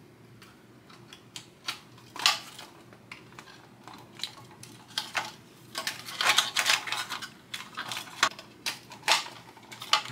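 Hard plastic body of a 1/24-scale RC crawler being fitted onto its chassis by hand: irregular small plastic clicks and taps, busiest from about five to seven seconds in.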